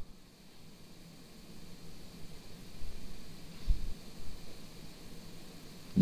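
Steady faint hiss of the recording microphone's background noise, with a brief low thump a little past the middle.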